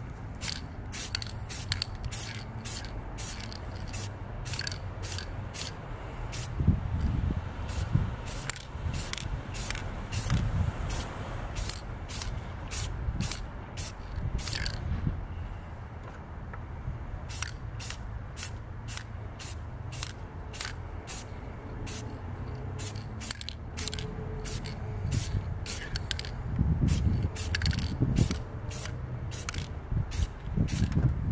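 Aerosol spray paint can spraying in many short spurts, about two or three a second, with a pause of a couple of seconds about halfway through.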